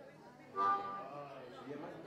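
A person's voice: one short call about half a second in that fades into the room's echo, against low room noise.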